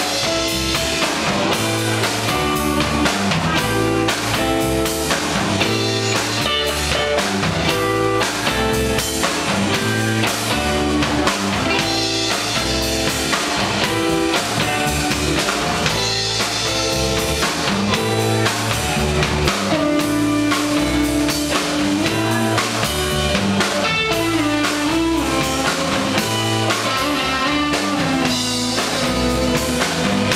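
A live rock band plays an instrumental, with two electric guitars, bass and drum kit, at a steady loud level.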